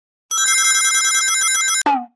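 A bright, trilling telephone-style ringing tone lasting about a second and a half and cutting off abruptly, followed by a brief falling tone.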